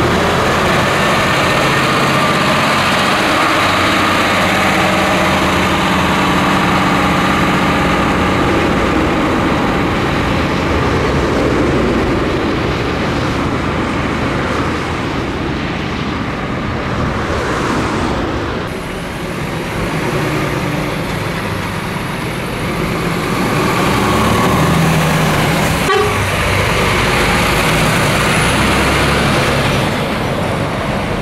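DAF tractor unit pulling a Schmitz tipper trailer driving past close by: its diesel engine runs steadily under the sound of tyres on the road.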